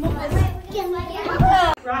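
Children's voices chattering and calling out as they play, breaking off suddenly near the end.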